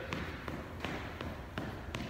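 Footfalls of a person running in place on a hardwood gym floor: quick, even thuds, about three a second.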